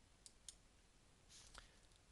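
Near silence with two faint mouse-button clicks about a quarter of a second apart, dismissing an error dialog.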